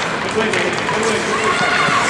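Ice hockey rink sound: spectators' voices calling out over the scraping of hockey skates on the ice as players skate off from a faceoff.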